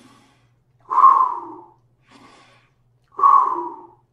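A man taking slow deep breaths close to the microphone: two loud exhalations about two seconds apart, each preceded by a faint inhalation.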